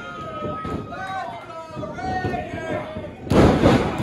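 A wrestler slammed down onto the wrestling ring by a spinebuster: one loud crash of the canvas-covered boards near the end, ringing briefly.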